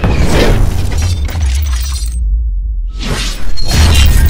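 Cinematic sound design for an animated logo sting: whooshes and shattering hits over a deep bass rumble. About two seconds in the sound drops out briefly, then a rising whoosh swells into a loud hit with booming bass.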